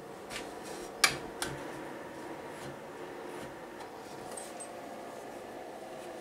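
Small inline duct fan running steadily off a 12 V battery, pulling air through a homemade filter box. Two sharp clicks about a second in as the box is handled.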